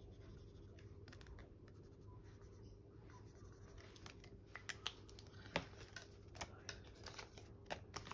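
Faint scratching of a felt-tip marker on a cardboard savings-challenge card, then a scatter of soft clicks and paper rustles as the marker is set down and banknotes are handled in a plastic binder pocket.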